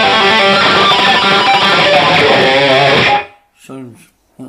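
Electric guitar through a HeadRush pedalboard with the drive turned full up, playing a heavily distorted rock lead line. Near the end the notes waver with bends or vibrato, and the playing stops suddenly about three seconds in.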